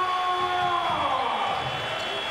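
A single steady pitched tone, held for about a second and then fading out.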